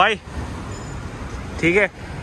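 Steady street background noise with road traffic, between two short bits of a man's speech.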